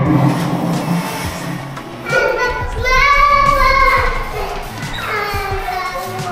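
A young child's high-pitched squealing voice, held for about two seconds in the middle, over background music.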